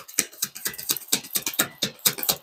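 A tarot deck being shuffled by hand: a quick run of light card clicks and flicks, about seven a second.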